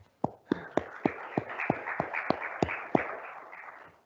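Small gathering applauding, with one person's loud claps close by at about three a second; the applause dies away near the end.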